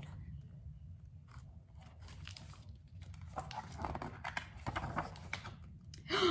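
Pages of a hardcover picture book being handled and turned: soft papery rustles and crinkles, thickest in the second half, over a steady low room hum.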